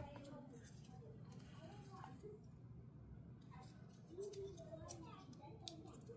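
Near silence: faint voices in the background, with a few light clicks as the small adapter board is handled.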